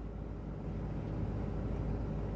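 Steady low rumble of a vehicle, heard from inside its cabin.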